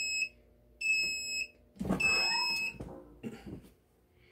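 MPress clamshell heat press timer beeping three times, each beep about two-thirds of a second, a little over a second apart. It signals that the 10-second press at 350 degrees is up.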